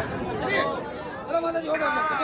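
Crowd chatter: several people talking over one another in a busy temple shrine.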